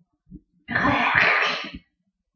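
A woman's single loud, harsh, cough-like burst of breath lasting about a second, her reaction to the burn of a shot of hot sauce.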